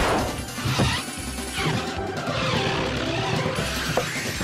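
Cartoon soundtrack: background music with a crash sound effect, loudest right at the start.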